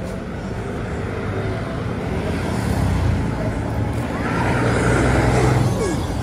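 Street traffic with a heavy car-carrier truck passing close by, its engine rumble building from about two seconds in and loudest near the end.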